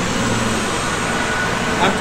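Steady low rumble of a fire truck's diesel engine running, with no siren.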